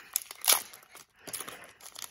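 Foil wrapper of a hockey card pack being torn open by hand: crinkling, with one loud rip about half a second in and smaller crackles after.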